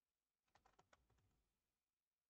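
Near silence broken by a quick run of about six faint computer-key clicks, starting about half a second in and over within a second.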